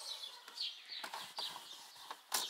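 Light, irregular rubbing and scuffing strokes from wiping down the plastic trim of a car's interior, several short strokes in quick succession.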